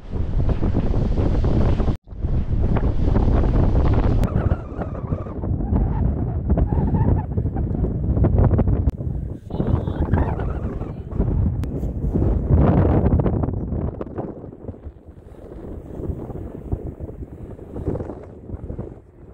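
Wind buffeting the microphone over the wash of surf on a sandy beach, easing off near the end. The sound cuts out twice briefly near the start.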